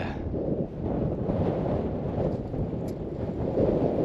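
Wind buffeting the microphone in a gusty low rumble. The microphone's wind buffer is fitted wrong, so the gusts come through strongly.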